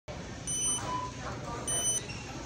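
Self-checkout machine beeping twice, short high beeps a little over a second apart, over background voices and store noise.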